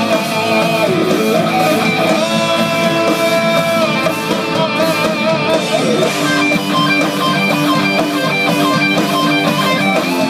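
Electric guitar lead played on a Gibson Les Paul: sustained single notes with wavering vibrato and bends, with a steady lower note joining about six seconds in.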